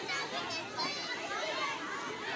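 A crowd of young children chattering and calling out at once, many voices overlapping with no single speaker standing out.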